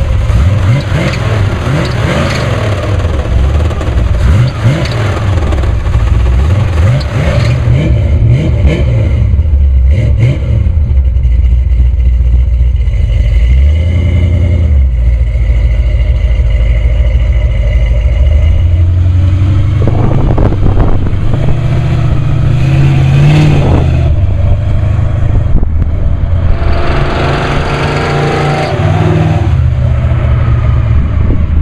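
A 1968 Camaro's 350 small-block V8 with headers and glasspack mufflers, running loud just after starting and revved repeatedly in the first several seconds. It then settles and accelerates away, its pitch rising again in the second half.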